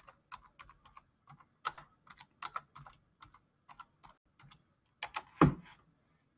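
Typing on a computer keyboard: a run of quick, uneven keystrokes entering a search phrase, with one harder key press near the end.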